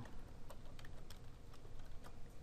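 Computer keyboard typing: a few separate keystrokes spread over two seconds.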